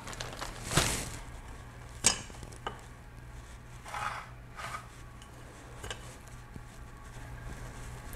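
Light kitchen handling sounds: a few sharp clicks and knocks of items being picked up and set down on a stone countertop, and two short rustles about halfway through, over a low steady hum.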